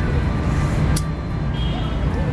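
Steady low outdoor rumble, with a single sharp click about a second in.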